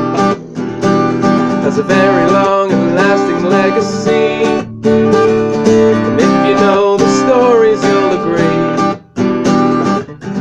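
Acoustic guitar strummed steadily, with a man's voice singing in places over it.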